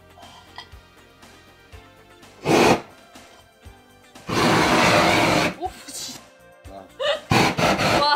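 Butane kitchen torch flaming a skillet of pepperoni, wine and herbs: a short loud rushing burst about two and a half seconds in, a longer one lasting over a second about four seconds in, and several quick bursts near the end as the pan flares up and is tossed. Faint background music underneath.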